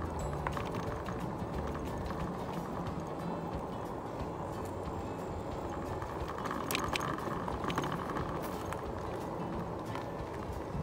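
Steady low rumbling noise with a few faint clicks about seven seconds in.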